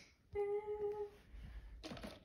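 A voice humming one short, steady note, followed by low rumbling and a knock from the phone being handled near the end.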